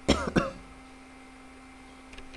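A person clearing the throat with two short, quick coughs in the first half second, followed by a faint steady hum.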